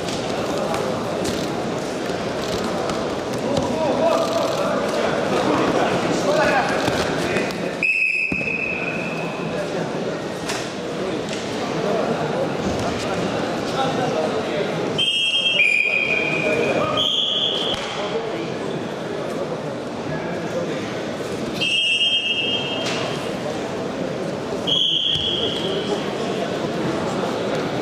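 Arena crowd chattering and shouting without pause, cut through by short, steady blasts of a referee's whistle: one about a third of the way in, then several in quick succession past the middle and two more near the end.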